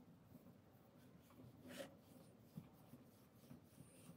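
Near silence with faint rustling and rubbing of yarn being handled, and one slightly louder brushing rub a little under two seconds in.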